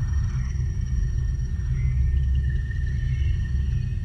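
Sci-fi film soundtrack: a deep, steady rumble with faint high held tones above it.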